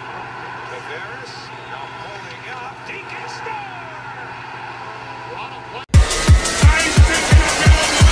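Hockey TV broadcast sound picked up off a television by a phone: faint commentary and arena noise. About six seconds in, it cuts sharply to loud electronic dance music with heavy bass kicks about three a second.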